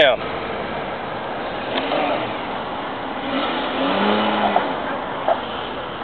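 A motor vehicle passing on the street, its engine sound rising and falling and loudest about four seconds in, over steady outdoor background noise.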